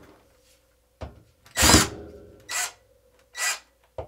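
Power drill run in four short bursts, the second, about one and a half seconds in, the loudest, as screws are worked out of a wire shelf's wall supports.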